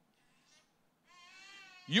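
Near silence, then a faint, high-pitched wavering cry lasting under a second. A man's speech starts right at the end.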